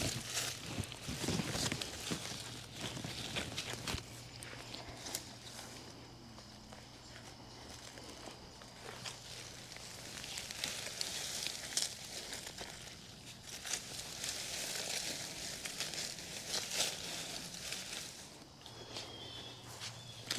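Soft rustling of leaves and soil with scattered light clicks and scrapes as gloved hands work around the base of a newly planted hydrangea. A faint low steady hum runs underneath through most of it.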